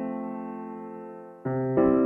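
Background music: a soft piano chord held and slowly fading, then a new chord with a low bass note struck about one and a half seconds in, the quiet piano introduction of a ballad just before the singing comes in.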